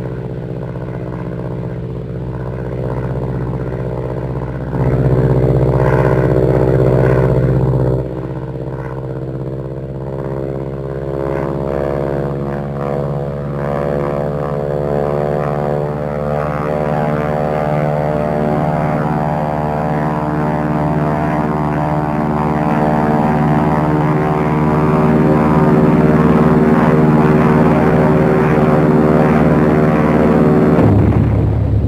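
Propeller aircraft engines droning steadily, one continuous pitched hum. It swells louder for a few seconds about five seconds in, then rises slowly in pitch and loudness through the second half.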